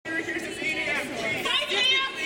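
Several people talking over one another in a large, echoing hall: a small crowd's chatter, with no single voice clear.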